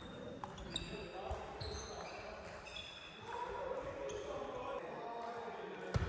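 Table tennis rally heard from across a sports hall: the ball clicking off the rackets and the table at irregular intervals, with short high squeaks that are likely sneakers on the hall floor.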